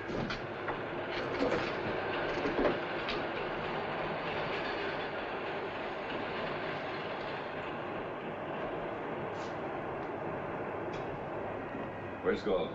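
A steady rushing rumble with a few sharp clicks and knocks in the first three seconds, easing slightly in the last few seconds.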